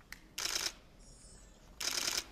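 Camera shutters firing in short bursts of rapid clicks, twice, about a second and a half apart.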